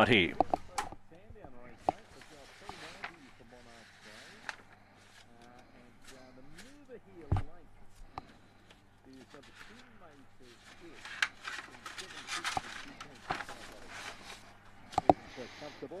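Faint voices of people talking in the background, with a single louder knock about seven seconds in and scattered sharp clicks and knocks later on.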